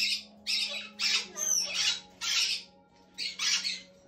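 White cockatoo giving a run of short, rasping squawks, about two a second, with a brief pause near the end.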